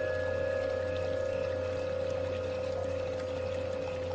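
Tibetan singing bowl ringing out after a strike, its tones held and slowly fading with a slight waver, over a steady low drone and a faint sound of running water.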